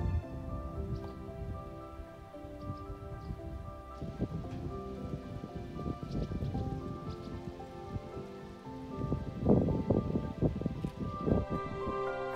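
Wind buffeting the microphone in irregular low gusts, strongest about nine to eleven and a half seconds in, under quiet background music.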